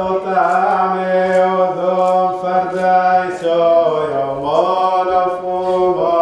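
A man's voice chanting a liturgical hymn in long, held notes that move in small steps, dipping lower briefly about four seconds in.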